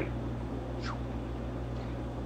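A pause between words: a steady low hum and faint background noise, with one short, faint chirp falling in pitch just under a second in.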